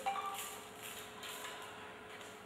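Quiet room tone with a faint steady hum, and a few faint light clicks near the start.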